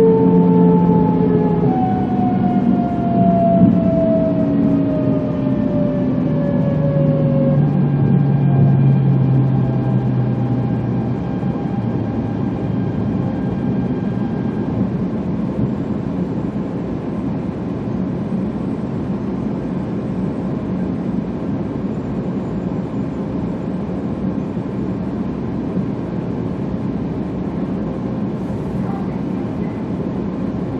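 E2-series Shinkansen traction motors whining as the train brakes into a station, heard inside the car: several tones fall together in pitch over about the first ten seconds and die away. A steady rumble of the car rolling slowly remains.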